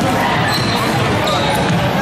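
Basketball bouncing on a hardwood gym floor, with crowd voices and chatter echoing through a large hall.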